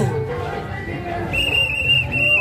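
A high whistle sounds past the middle, held steady on one pitch for about half a second, then breaks briefly and sounds again, over music and crowd voices.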